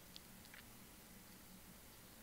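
Near silence: room tone, with two faint short clicks in the first half-second.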